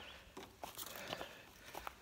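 Faint footsteps of a hiker walking on a dirt woodland trail: a few soft, irregular scuffs and crunches.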